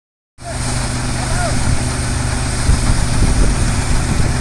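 Tractor-powered threshing machine running steadily under load as sorghum heads are fed in, a constant low hum with dense noise over it, starting abruptly about half a second in.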